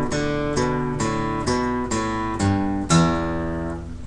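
Acoustic guitar playing a slow single-note lick, a new note picked about every half second, cascading down toward the low strings.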